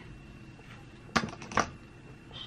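Two sharp plastic clicks about half a second apart, a little after a second in, from a Waveformer hook tool being handled against a plastic spiral curler.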